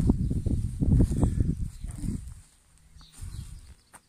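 Footsteps on a gravel path with low rumbling noise on the phone's microphone, loud for the first two seconds and then dying away.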